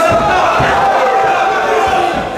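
A crowd of spectators shouting and yelling over one another, loud and continuous.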